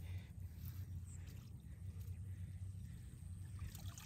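Faint water sounds of a cast net being hauled in and lifted dripping from a river, over a steady low hum.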